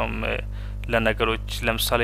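A lecturer's voice speaking in short phrases, with a brief pause about half a second in, over a steady low electrical hum.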